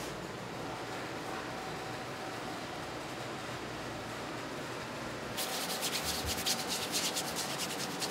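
Large calligraphy brush loaded with sumi ink rubbing across paper, soft at first; about five seconds in it breaks into a quick run of scratchy scrubbing strokes, several a second.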